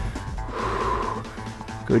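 Background music plays throughout. About half a second in, a person breathes out hard through the mouth for under a second, as effort breathing during a dumbbell squat-and-press.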